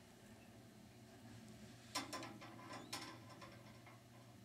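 Near quiet with a low steady hum, broken by a few faint clicks and light rattles about two to three seconds in.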